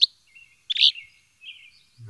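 Wild birds calling: a sharp high chirp at the very start, a louder chirp a little under a second in, and thin, level whistles between them.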